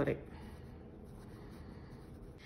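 Uni-ball pen writing on ruled notebook paper: a faint, steady scratching of the tip across the page.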